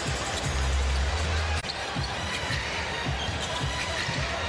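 A basketball dribbled on a hardwood arena court, about three bounces a second, over steady arena crowd noise. Early on, arena music plays a deep bass note that ends abruptly about a second and a half in.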